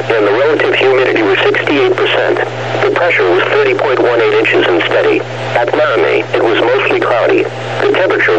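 Only speech: a NOAA Weather Radio announcer voice reading the weather report, heard as a radio broadcast and cut off in the treble, with a steady low hum underneath.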